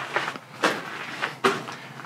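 A few footsteps on a loose gravel floor, about three-quarters of a second apart.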